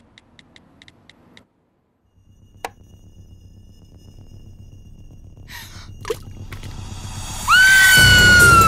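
Soundtrack sound design: quick, even soft ticks, then a brief silence and a single sharp click like a light switch. A low drone then swells steadily, with a couple of faint clicks, until a loud shrill horror-music sting cuts in near the end and slowly sags in pitch.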